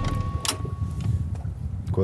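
Low, steady rumble of a motorboat's engine running, with a single sharp click about half a second in.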